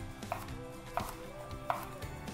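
Chef's knife slicing through a cucumber and striking the cutting board, three cuts about two-thirds of a second apart.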